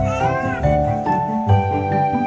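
Gentle background music with steady held notes; near the start a baby gives one short, high vocal coo, about half a second long, that rises and falls in pitch.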